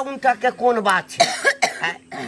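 Speech: a man talking in Maithili in an emotional conversation, with a brief rough noisy sound about a second in.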